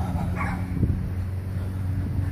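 A steady low motor hum, with a brief higher-pitched sound about half a second in and a faint knock just under a second in.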